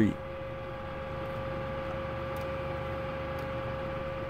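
A steady, even hum with one constant mid-pitched tone through it and no other events.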